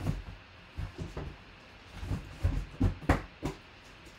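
Irregular knocks and thumps of boxes and objects being moved as someone rummages for an item, about eight of them spread unevenly over the few seconds.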